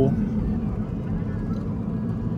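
Steady low road noise inside the cabin of a moving 10th-generation Honda Civic: tyres and engine at cruising speed.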